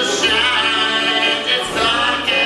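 Acoustic bluegrass band (banjo, mandolins, acoustic guitars, fiddle, dobro and upright bass) playing while several voices sing in harmony on held notes.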